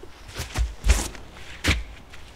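Footsteps of a disc golfer's run-up and plant on the tee pad as he throws a backhand drive: three thumps, the loudest about a second in.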